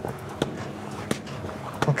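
Three or four light, sharp knocks and clicks from hands handling a rope-wrapped wooden log conditioning post, over a low steady room noise.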